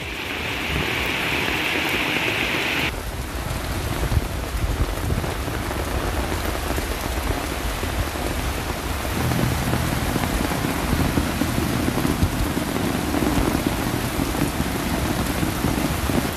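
Heavy rain falling on a flooded street, a steady hiss. Its character changes at a cut about three seconds in, and a low rumble joins it about nine seconds in.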